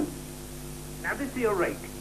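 Steady hum and hiss of a VHS tape recording of an old film soundtrack. A brief, quieter bit of dialogue comes in about a second in.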